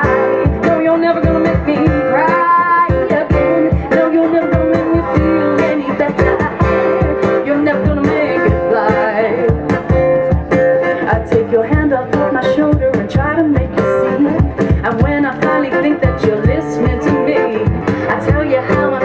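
Live amplified performance of a song: a woman singing over strummed guitar and a steady percussion beat.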